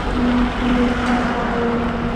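A truck passing close by on the highway: a steady, even engine drone over road and wind noise.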